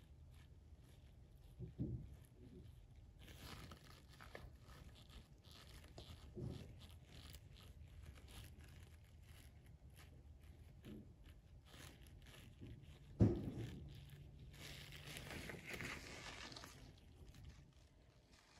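Faint scraping and squishing of a silicone spatula working thick cold-process soap batter into a silicone mould, with a few soft knocks and one louder knock about thirteen seconds in. The batter has set up fast, which the soapmaker puts down to too much beeswax.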